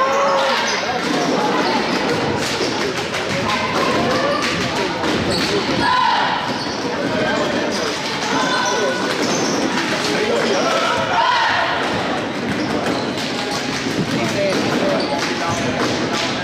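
Basketball game play on a hardwood gym court: the ball bouncing and players moving, with many sharp knocks throughout, under a steady run of crowd and bench voices.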